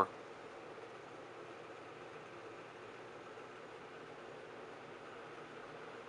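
Faint, steady room tone: a low hum with light hiss and no distinct sounds.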